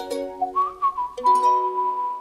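Outro music with a whistled melody gliding in about halfway through, settling on a long held final note.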